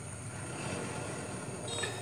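Steady low background noise of road traffic and vehicles.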